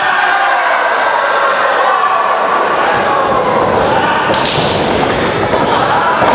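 Pro wrestling in the ring: bodies and strikes landing with thuds and slaps, the sharpest about four seconds in, over a crowd shouting and calling out.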